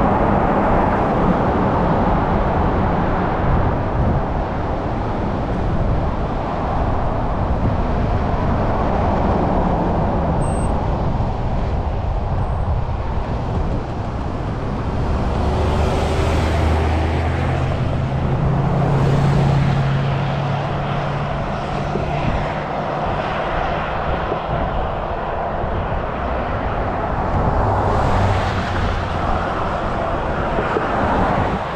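Highway traffic noise: a steady rush of passing vehicles. Midway, an engine hums steadily for several seconds as a vehicle goes by.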